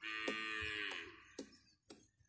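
An animal call lasting about a second, starting suddenly and falling in pitch as it ends, with a few sharp clicks around it.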